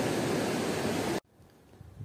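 Steady rush of breaking ocean surf, cut off suddenly a little over a second in and followed by near silence.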